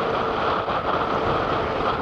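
Steady rushing noise of an Airbus A380-861's four Engine Alliance GP7200 engines at takeoff thrust on a wet-runway takeoff roll, mixed with the hiss of an open air traffic control radio channel between transmissions.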